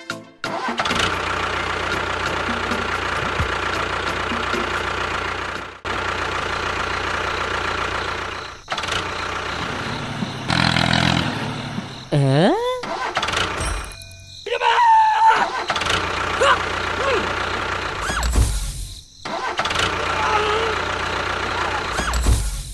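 Tractor engine sound running steadily, cutting out and starting again twice. Later come gliding, voice-like sounds over music.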